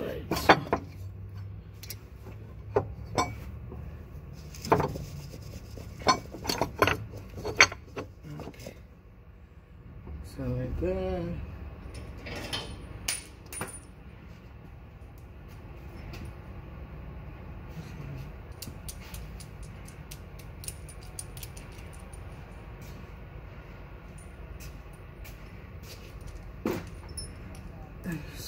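Metal tools and bolts clinking and knocking against each other and against the mount bracket in a quick run of sharp clicks over the first eight seconds or so, then a steady low hum with only a few faint ticks.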